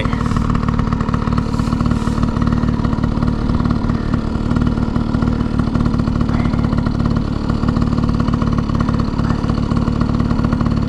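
Small dirt bike engine idling steadily, with no revving.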